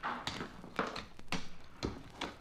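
Radio-drama sound effect of digging in earth: a digging tool striking about four times, roughly every half second, at a low level.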